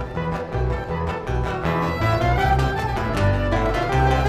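Live acoustic band of acoustic guitars, upright double bass and violin playing an instrumental passage, with the violin carrying a gliding melody over plucked bass notes and guitar.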